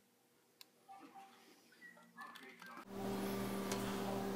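Faint scattered small clicks of handling, then about three seconds in a steady low electrical hum starts abruptly and holds.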